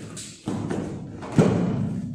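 A judoka thrown onto a foam judo mat: scuffling feet and gi from about half a second in, then one heavy thud of the body landing about one and a half seconds in.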